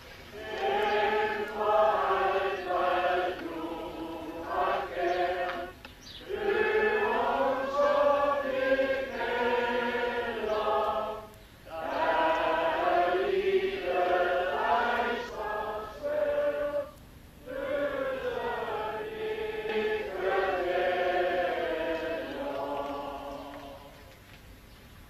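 A group of voices singing a slow song together, in four long phrases with short pauses between them.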